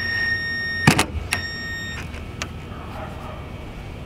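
Power drill driving a Phillips screw down: a steady high motor whine that stops with a click about a second in, then a second short run of under a second to snug the screw.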